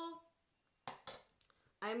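Two quick, light clacks about a quarter second apart as small objects are handled on a wooden tabletop: a clear plastic ruler set down and a marker pen picked up. A woman's voice is heard briefly before and after.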